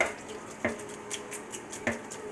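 A plastic colander of wet, buttermilk-soaked catfish pieces being tossed and knocked about in a stainless steel sink to drain. Three sharp knocks: one at the start, one just over half a second in with a brief faint ring after it, and one near the end.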